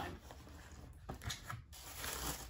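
Faint rubbing and a few light taps of a cardboard shoe box being handled and its lid opened.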